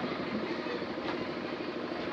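A steady, machine-like background drone with a low hum.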